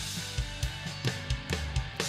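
Progressive metal instrumental drum playthrough: a drum kit plays uneven kick and snare hits over low, sustained guitar notes. The groove has an odd-time feel, like a twelve-eight or six-eight that isn't one.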